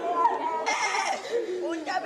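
Mourners wailing and sobbing in grief, several voices crying out with wavering, rising and falling pitch.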